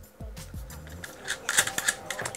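Quiet background music, with a quick run of light clicks and rattles near the end as the bare speaker wire is pushed into a speaker's gold-plated binding post and handled.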